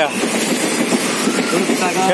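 Steady running noise of the Amaravati Express passenger train heard from inside a coach, mixed with the rush of the nearby waterfall, with passengers' voices faintly in it.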